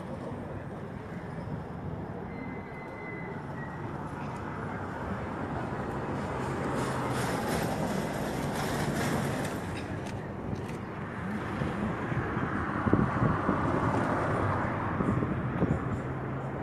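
Outdoor street noise with a steady vehicle rumble, swelling louder in the middle and again near the end.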